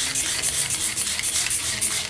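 Hand trigger spray bottle spraying liquid onto a headlamp in a quick run of squirts, a loud hiss lasting about two seconds.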